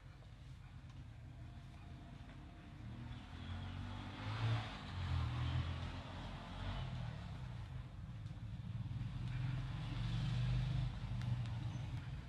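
A low rumble that builds about three seconds in and swells twice, with a fainter hiss above it.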